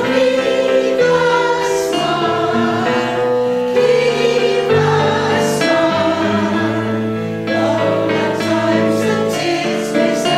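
A women's choir singing a sacred song together, holding long notes and moving between them.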